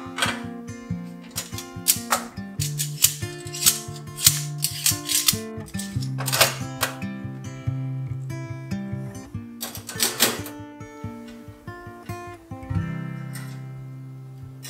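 Background music with acoustic guitar, over irregular metallic clacks and clinks as a stainless steel two-tier dish rack with a sliding lower rack is handled and set in place on a stainless sink.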